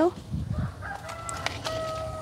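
A rooster crowing: one long held call that starts about a second in and steps up in pitch partway through. Within the first second there is also a soft low thud.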